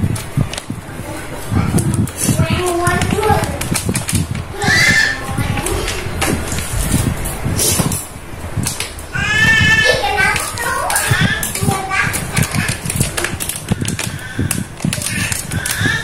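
High-pitched voices talking and calling out in the background, like children at play, over short clicks and rubbing from hands working spice into raw catfish in a plastic tub.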